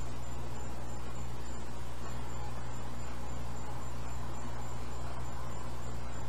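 Steady low electrical hum and hiss of room noise, with a faint high-pitched chirp pulsing on and off at an even rapid rate throughout.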